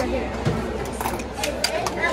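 Background voices chattering in a busy hall, with a few sharp clinks of small stainless-steel pots, bowls and utensils being handled on a play kitchen stove.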